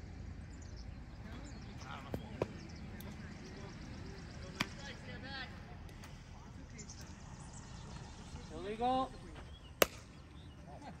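A few sharp knocks of softball play, ball striking bat or glove, with the loudest crack near the end and a player's shouted call just before it.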